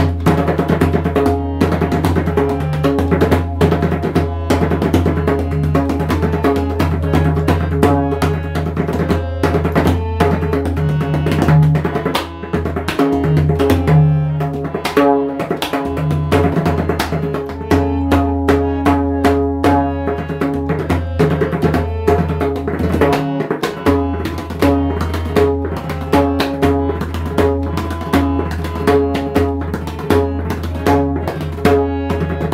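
Solo pakhawaj playing chautal: fast, dense strokes on the treble head over a deep, sustained boom from the bass head. The strikes fall in quick runs, settling into a more regular accented pattern in the last few seconds.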